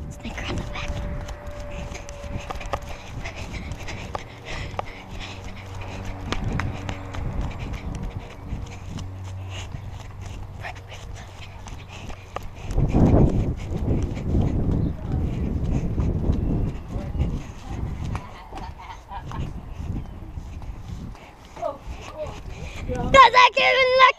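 Footsteps and clothing rustle through grass, with wind buffeting the microphone of a body-worn camera. The rustling grows louder from about thirteen seconds in.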